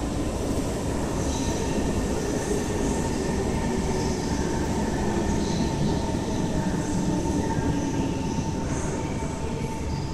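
SMRT Kawasaki C151 metro train pulling into the station past the platform screen doors: a steady rumble with a thin, steady whine and scattered brief high squeals from the wheels.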